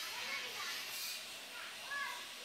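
Faint background voices, high-pitched like children's, over a steady high hiss.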